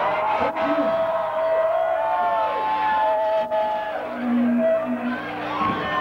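Electric guitar feedback from a rock band's amplifiers: long sustained tones that waver and bend in pitch as the song rings out, with crowd noise underneath.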